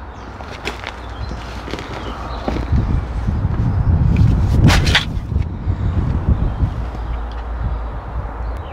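A metal garden shovel scrapes into a heap of crumbly homemade compost, and the shovelful is tipped into a fabric grow bag, where it lands with a coarse rustle. There is a sharp click about halfway through.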